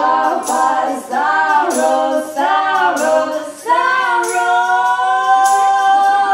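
Women's voices singing live in close harmony in a folk-bluegrass song: a run of short sung phrases, then a long held note from a little under four seconds in.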